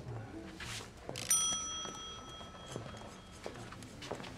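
A single bright bell-like ding about a second in, ringing on for about two seconds as it fades.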